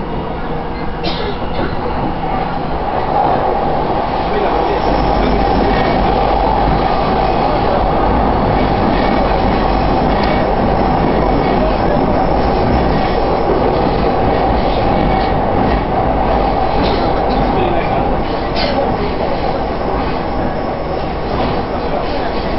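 Cabin running noise of a JR East E233-1000 series commuter train's motor car moving along the track. It grows louder over the first few seconds and then holds steady, with a few short sharp clicks.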